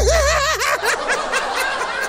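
A man laughing, a wavering, giggling laugh that is strongest in the first second and then trails off.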